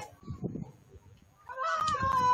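A person's loud, drawn-out high-pitched shout that starts about a second and a half in, after a quiet stretch with a few faint knocks.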